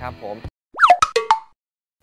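Cartoon-style sound effect: a quick run of four or five sharp pops with sliding pitch, lasting about half a second.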